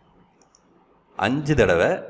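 A brief pause with faint room tone, then a man's voice speaking from a little over a second in.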